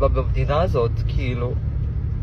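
A steady low rumble of a car heard from inside the cabin, under a young man's tearful speech that stops about one and a half seconds in.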